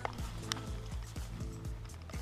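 Background music with a steady beat of about two strokes a second under held, sustained notes.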